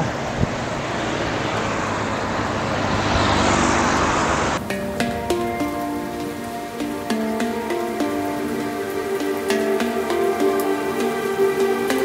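Wind and traffic noise from riding a bicycle on an open road, cut off suddenly about four and a half seconds in by background music: sustained melodic notes with light ticking accents.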